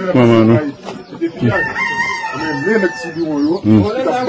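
A rooster crowing: one long held call starting about one and a half seconds in, with a man's voice briefly before and after it.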